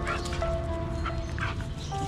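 Dogs yipping and whimpering in a few short, high, rising cries as they play-fight, over background music with sustained notes.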